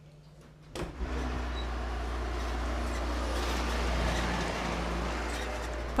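A motor vehicle on the road, a steady engine hum under even road noise, cutting in suddenly about a second in after faint room tone.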